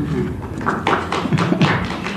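Sheets of paper being handled and rustled right by a lectern microphone: a run of quick rustles and taps through the second half.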